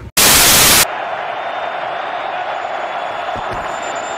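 A loud burst of white-noise TV static for under a second, cutting off abruptly. It gives way to a steady stadium crowd hubbub from a televised football broadcast.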